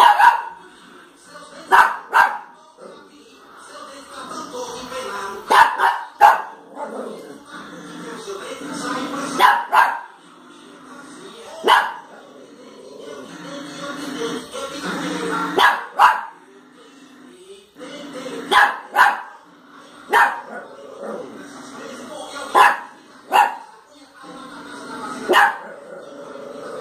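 Small dog barking in short, sharp barks, singly or in quick pairs, every two to four seconds.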